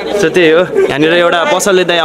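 A man speaking close to the microphone, in a steady stream of talk with no other sound standing out.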